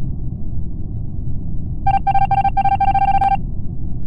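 Video-game ejection-screen sound effect: a steady low rumble, joined about two seconds in by a rapid string of short electronic beeps lasting about a second and a half as the text types out letter by letter.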